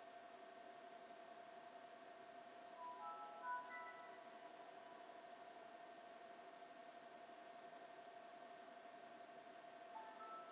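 Windows startup chime from a booting laptop: a short run of clear, pitched notes about three seconds in, with another chime starting near the end, over a faint steady whine.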